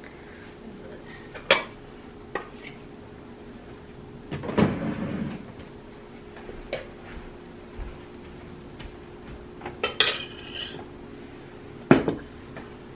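A metal spoon clinking and scraping against a stainless steel mixing bowl and ceramic dishes as food is served. There is a scraping stretch about four seconds in and a few sharp clinks, several of them close together near ten seconds, over a steady low hum.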